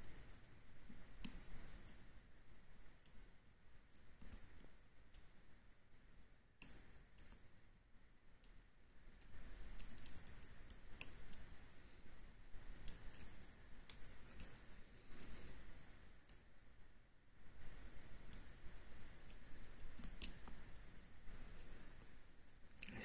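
Faint, irregular light clicks of a hook pick and tension wrench working the pins of an Oxloc-branded M&C Color lock cylinder. By the end the picker thinks he has overset a pin.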